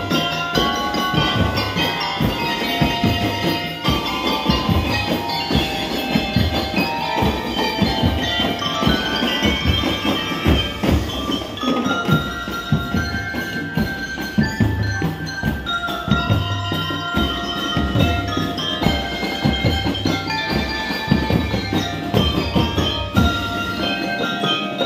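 A drum and lyre corps playing: quick melodic lines on mallet keyboard instruments over a steady beat from bass drum and drum kit.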